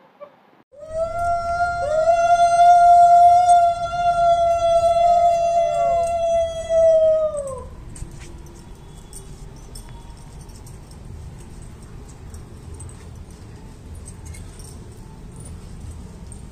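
Two conch shells blown together during a puja, the second joining about a second after the first: each is a long steady note that sags in pitch as the breath runs out, the first stopping about six seconds in and the second a moment later. Low background noise follows.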